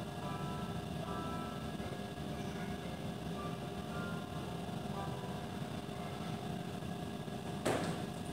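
Faint background music from a video playing through classroom speakers, heard across the room over a steady low hum. A single sharp knock near the end.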